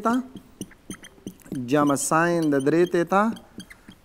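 Marker pen writing on a whiteboard: a run of short scratches and taps, with a man's voice speaking about halfway through.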